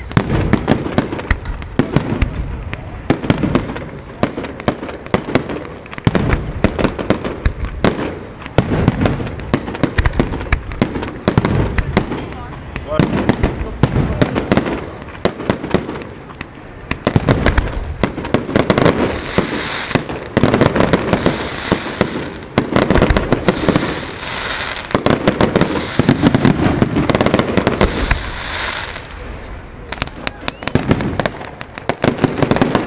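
Fireworks finale: a continuous, rapid barrage of aerial shells bursting, loud bangs following each other several times a second, the barrage growing denser in the second half.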